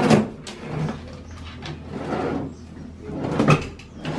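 Wooden drawers being pulled open and pushed shut, with several sharp wooden knocks as they slide and close.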